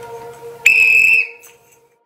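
A coach's whistle blown once: a single short blast of about half a second on one high tone, starting a little over half a second in.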